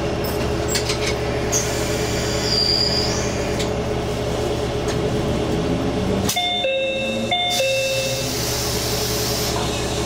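Diesel railcar engine running with a steady hum while the train stands at the platform. About six seconds in, a two-note electronic chime sounds, the second note lower.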